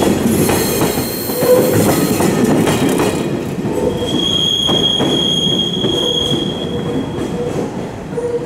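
Empty Koki 20B container flatcars of a freight train rolling past over rail joints, the clatter of the last wagons' wheels fading as the train moves away. A high, steady metallic squeal rings out from about four seconds in for about two seconds.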